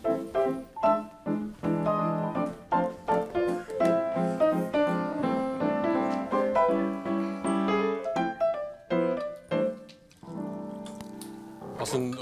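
Upright piano playing a lively interlude of chords and quick runs of notes, dropping to a softer, held chord near the end.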